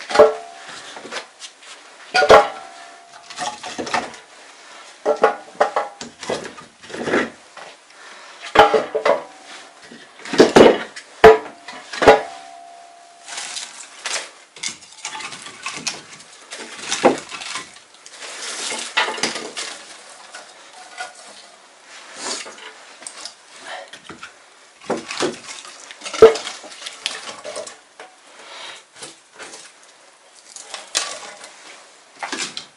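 Irregular metal clanks and knocks from a small iron stove being readied for lighting. Several ring briefly, and there is rustling handling noise between them.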